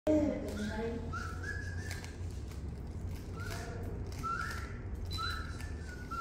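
A person whistling a series of about five short notes, each sliding upward and then holding briefly.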